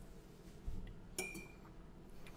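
A soft low thump, then a single sharp glass clink about a second in that rings briefly: a glass water dropper knocking against a small glass water jug as it is set back in.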